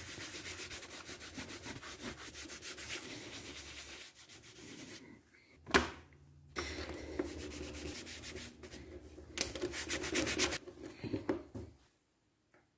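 A wool dauber rubbed over leather in quick back-and-forth strokes, working in neatsfoot oil. There is one sharp knock about six seconds in, then more rubbing as the wool is worked between the hands, with a fast run of strokes near the end.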